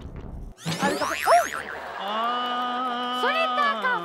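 Cartoon-style comedy sound effects: a quick burst of rising 'boing'-like sweeps, then a steady held electronic tone, with a voice exclaiming over it.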